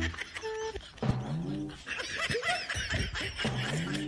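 Laughter: a run of short, pitched laughing bursts that rise and fall.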